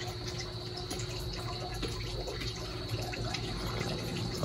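Water from a pump-fed drip-irrigation line running steadily, with a faint steady low hum.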